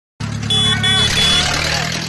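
A vehicle engine running steadily, cutting in abruptly. Three short high beeps sound over it in the first second.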